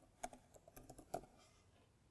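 Faint typing on a computer keyboard: a quick run of about seven or eight keystrokes that stops a little over a second in.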